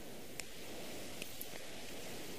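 Faint rustling of leaves being stripped by hand from a soap bush, with a few small snaps.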